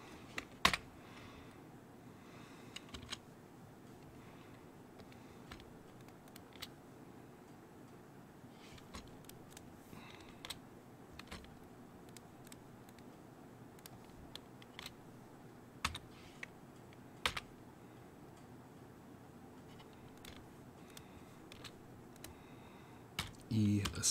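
Scattered single clicks of a computer keyboard and mouse, irregular and a second or more apart, over a faint room hum. The loudest click comes just under a second in.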